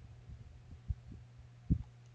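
Steady low hum in the recording, with a few soft low thumps, the clearest about a second in and near the end.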